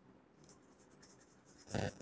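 Faint scratching of chalk on a blackboard as a word is written by hand.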